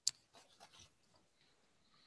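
A single sharp click, then a few faint scratchy rustles in the first second, over low room noise picked up by a video-call microphone.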